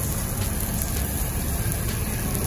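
Food sizzling on a hot flat iron griddle, a steady hiss over a continuous low rumble.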